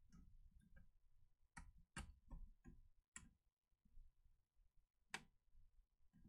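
Faint, sparse clicks and ticks, a few seconds apart, from a small screwdriver turning the screws of a laptop's heatsink assembly. The screws are backed off counter-clockwise until the thread drops into place before they are driven in, which keeps them from cross-threading.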